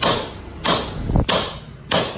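Four evenly spaced hammer blows, metal on metal, each with a short ring, driving a new bearing into a Peugeot 206 rear suspension arm.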